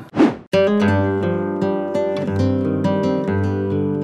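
Background music added in the edit: picked acoustic guitar notes over a low bass line, starting about half a second in, just after a brief whoosh.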